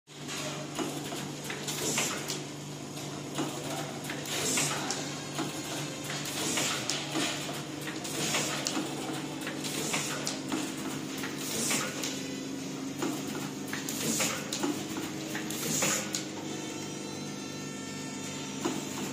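Automatic face-mask pouch packing machine running, repeating its cycle about every two seconds: clicks and short hisses over a steady hum.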